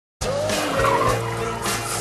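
Car tires squealing briefly as a car swings into a parking space, about a second in, over music with a steady beat.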